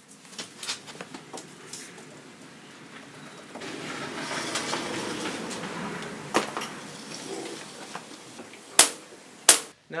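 A chalk line snapped against OSB wall sheathing: two sharp slaps about two-thirds of a second apart near the end, the loudest sounds here. Before them come quieter clicks and rustling as the line is strung out along the wall.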